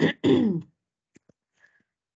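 A woman briefly clearing her throat in the first half second, followed by a few faint ticks.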